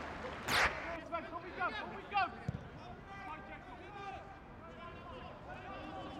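Pitch-side sound of a football match: players shouting and calling, with a loud sharp burst just after the start and a thud of a kicked ball about two and a half seconds in.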